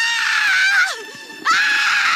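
A woman screaming in anguish and grief. One long, high scream falls away just before a second second, and a second begins about a second and a half in.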